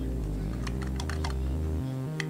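A quick run of light clicks from metal tweezers and small plastic planet gears being set into the metal ring gear of a planetary gearbox, clustered about a second in.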